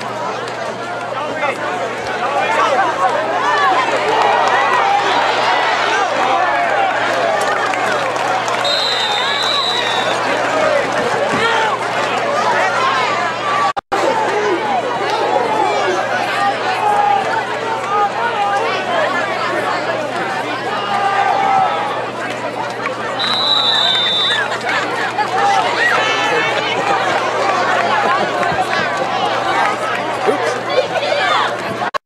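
Spectators in the stands at a football game talking and calling out over one another in a steady crowd chatter. A referee's whistle sounds twice, once about nine seconds in and again about 23 seconds in, each a single steady blast of about a second.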